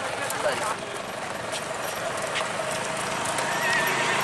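Horse's hooves clopping and shifting on a paved road, heard over the chatter of a crowd of voices.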